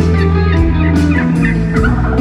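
Live band music with sustained low bass notes, over which, from about half a second in, a quick run of short warbling notes that sound like a turkey gobbling.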